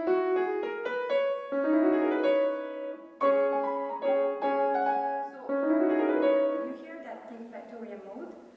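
Steinway grand piano playing a short passage in several phrases, each opening with a fresh cluster of notes, the playing thinning out and fading near the end.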